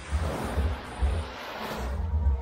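Background music with a steady beat, about two beats a second, over a rushing wash of small waves breaking on the sand; the rushing starts and stops abruptly.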